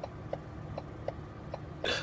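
A man crying quietly between sentences, with a sharp intake of breath near the end. Faint, evenly spaced ticks sound behind him.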